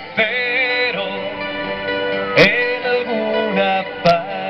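A rock band playing live: a man singing into a microphone over a strummed acoustic guitar, with sharp percussive hits a little past halfway and right at the end.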